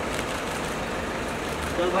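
A car engine idling, a steady low running noise under street background noise. A man's voice comes in near the end.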